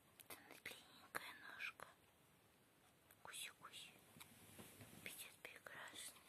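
Faint whispering voice in three short stretches.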